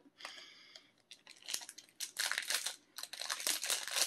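A short sniff at a protein bar, then its plastic wrapper crinkling and crackling irregularly as it is handled.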